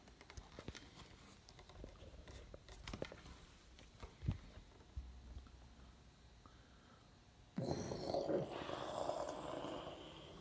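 Handling noise close to the microphone: scattered light clicks and knocks, then, about three-quarters of the way in, a louder rough rushing noise that lasts a couple of seconds.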